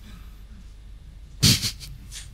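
A single short breathy laugh into a handheld microphone, about one and a half seconds in, over a low steady room hum.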